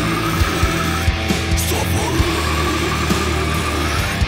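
Instrumental passage of a death metal/crust song: heavily distorted guitars and bass over pounding drums. A high note twice slides up and then holds.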